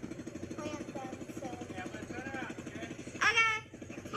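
Side-by-side utility vehicle's engine running steadily with a fast, even low pulse, under faint children's voices and a short loud voice near the end.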